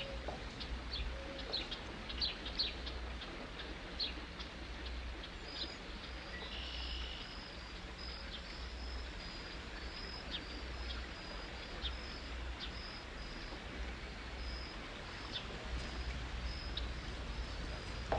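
Birds calling outdoors: scattered short high chirps in the first few seconds, then a high note repeated about twice a second for several seconds, over a steady low hum.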